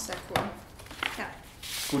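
Thin, glossy pages of a hardcover photo book being flipped by hand: a few sharp paper slaps and a rustling swish of turning pages near the end.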